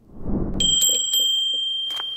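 A low whooshing swell, then a bright bell rung a few times in quick succession about half a second in, its tone ringing on and slowly fading.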